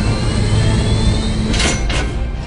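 Deep, steady mechanical rumble of a large vehicle's engines, with a faint rising whine early on and a short rushing whoosh about a second and a half in.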